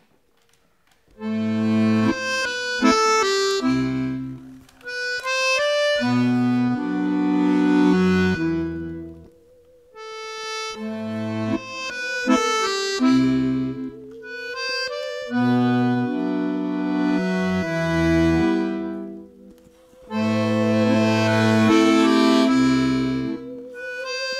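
Button accordion playing phrases of chords and melody that break off briefly a few times. From about five seconds in, a bowed musical saw joins, holding a single wavering tone with a wide vibrato.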